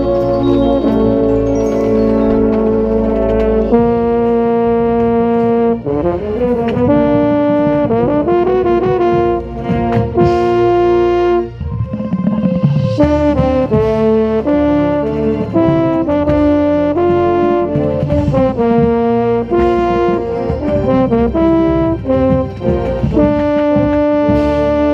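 Drum corps brass ensemble playing with a baritone horn right at the microphone: held chords at first, changing around 4 s in, then quicker moving lines with a short break near the middle.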